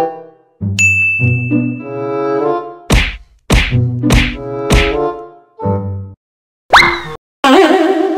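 Comic editing sound effects over a short plucked-note musical phrase: a bright ding about a second in, then four sharp whacks about half a second apart, and another sharp hit with a falling pitch near the end.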